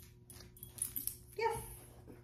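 A puppy giving one short, high-pitched whine about one and a half seconds in.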